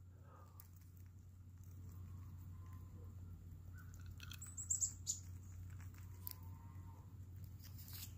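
Faint scratching and rustling of an eastern chipmunk handling a peanut in its shell and working it into its mouth. A few short high chirps and clicks come about four and a half seconds in.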